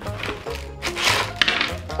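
Plastic candy bag crinkling as it is pulled out of a cardboard box, in short rustles about a second in, over background music with a steady bass beat.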